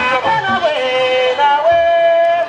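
A young man singing into a handheld microphone, holding long notes that slide and waver in pitch.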